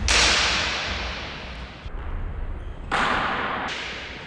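Two sharp cracks of sparring longswords striking, one right at the start and another about three seconds later. Each dies away in the echo of the hard-walled court.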